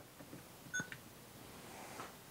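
Quiet room tone with one short, high electronic beep a little under a second in.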